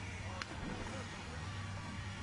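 A person jumping into a swimming pool: one short splash about half a second in, over a steady low hum of outdoor pool ambience.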